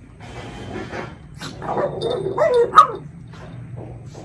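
Small dog yipping and whining: a run of short cries that bend up and down in pitch over about a second and a half, ending in a sharp, loud one.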